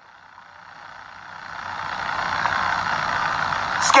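A motor vehicle going by. Its noise swells steadily over the first two and a half seconds or so, then holds loud.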